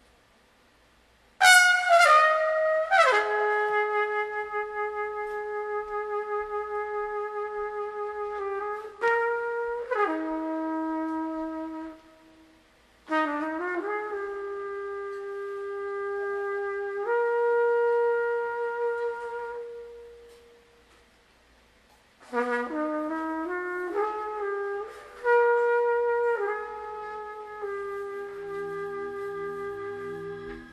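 Unaccompanied jazz trumpet playing long held notes with vibrato in four slow phrases, with short silent breaks about twelve and twenty-one seconds in.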